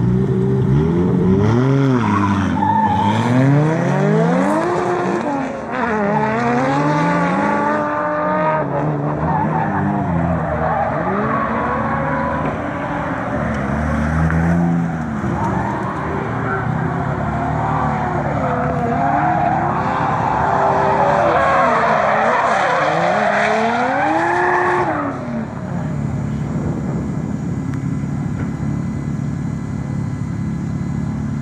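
Drift car engines revving hard, the pitch swinging up and down over and over as the throttle is worked through slides, with tyres squealing and skidding. About 25 seconds in the revving stops and a car engine carries on at a steady, lower idle.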